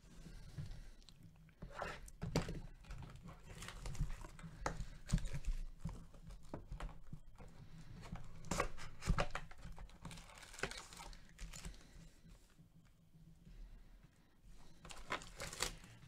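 Plastic shrink-wrap being torn off a sealed trading-card hobby box and crinkled, in irregular crackles and rips that are busiest in the middle.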